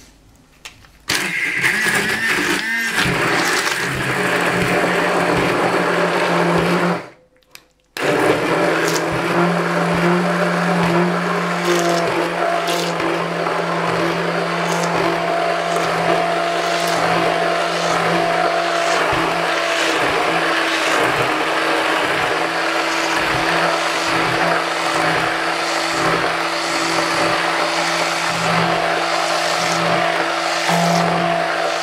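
Hand-held immersion blender running steadily as it purées thick cooked split-pea porridge with fried carrot and onion in a glass bowl. It starts about a second in, stops briefly around seven seconds, then starts again and runs on.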